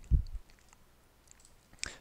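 A low thump near the start, then a few faint, scattered computer mouse clicks.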